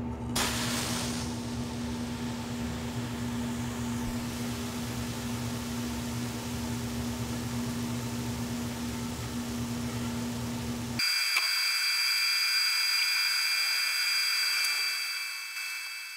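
Liquid ammonia poured onto chromium trioxide flakes: a brief rush about half a second in, then a steady hiss as the ammonia boils and reacts with the oxide, over a steady low hum. About eleven seconds in the sound cuts suddenly to a set of steady high tones.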